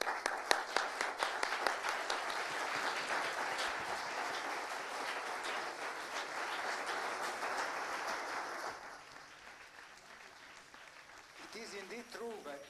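Audience applauding, a dense patter of many hands clapping that dies away about nine seconds in.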